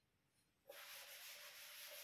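A board duster rubbing across a chalkboard, wiping it clean: a steady rubbing starts about two-thirds of a second in, after near silence.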